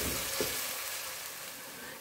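Sliced onions sizzling in hot oil in an aluminium pressure cooker as they brown, stirred with a wooden spatula; the sizzle is a steady high hiss that fades slightly, with one soft knock about half a second in.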